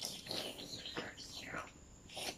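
Soft, whispered voice with a few light clicks.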